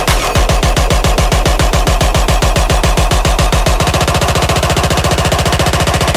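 Dubstep build-up: a rapid electronic drum roll of evenly repeated hits over a sustained low bass. The roll doubles in speed about two-thirds of the way through and cuts off at the end, leading into the drop.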